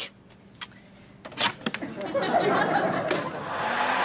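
A canister vacuum cleaner switches on about halfway through. Its motor runs up to speed and keeps running steadily, with the hose held against skin.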